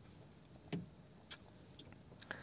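Near quiet, with two faint short knocks about half a second apart, from clothes being handled on a metal shop rack.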